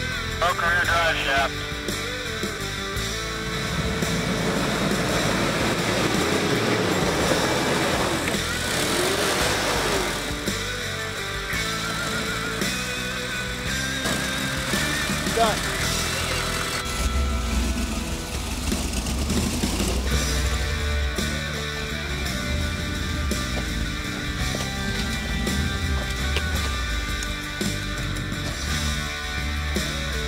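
Guitar rock music over off-road 4x4 trucks' engines revving, rising and falling in pitch as they claw up a steep dirt hill, with a heavy low rumble in the middle. Voices are heard briefly near the start.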